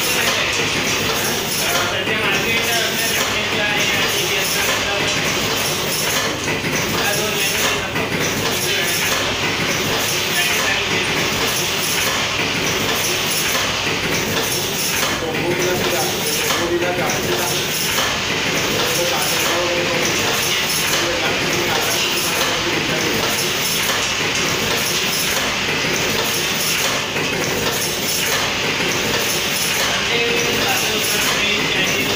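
Automatic centre-spout sachet packing machine running, cycling with a steady, repeating mechanical clatter.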